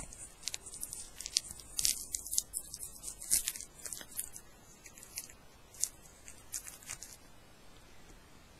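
Packaging being handled and opened by hand: irregular, crisp crackles and clicks that thin out and stop about seven seconds in.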